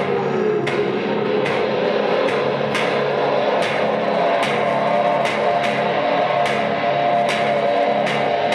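Live experimental music: sharp ringing attacks land a little more than once a second in a steady pulse, over a sustained drone that slides down in pitch in the first second and then holds.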